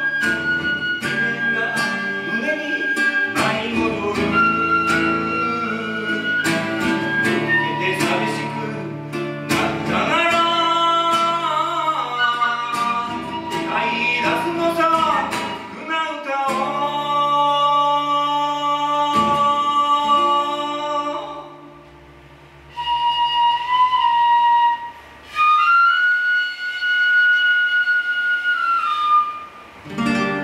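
Shinobue (Japanese bamboo transverse flute) playing a melody over a strummed acoustic guitar. About two-thirds of the way in the guitar drops out, and the flute plays long held notes on its own, broken by short pauses.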